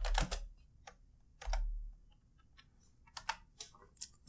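Computer keyboard keystrokes: scattered taps in the first second and a half, a quiet stretch, then a quick run of keystrokes near the end.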